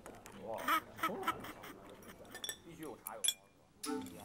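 People sucking sea snails out of their shells: short, squeaky, quack-like sucking noises and voice sounds, with a sharp click a little after three seconds.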